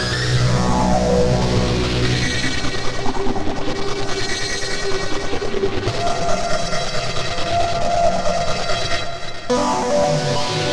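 Distorted synthesizer music from LMMS's TripleOscillator 'Erazzor' preset, played live from a digital piano keyboard: a harsh, dense improvised line with fast repeated notes, a held higher note in the latter half and an abrupt change near the end.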